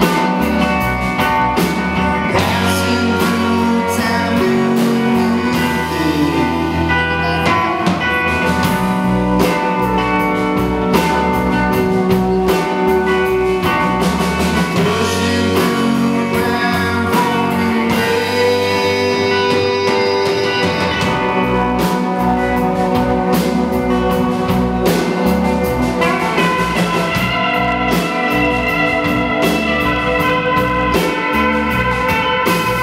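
Live rock band of pedal steel guitar, electric guitar, bass guitar and drum kit playing an instrumental stretch of a song.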